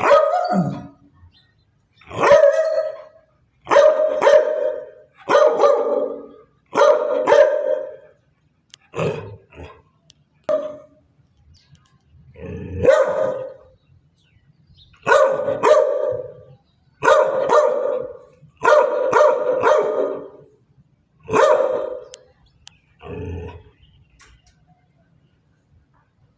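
A dog barking over and over, single loud barks about every one and a half to two seconds, a few of them coming as quick doubles.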